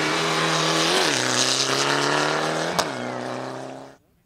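Mitsubishi Lancer Evolution rally car's turbocharged four-cylinder engine running hard at high revs as the car passes on a gravel stage. The pitch jumps and drops about a second in, as at a gear change, with a brief sharp click near three seconds, before the sound fades out just before the end.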